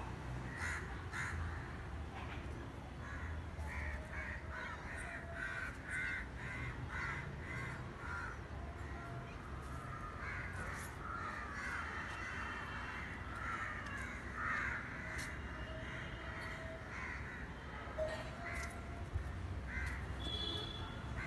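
Crows cawing over and over, many short harsh calls in quick runs.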